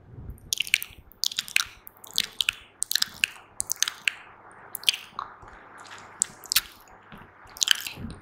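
Wet mouth sounds made right against a microphone: fast, irregular lip smacks and tongue clicks in quick clusters, with a short lull about six seconds in.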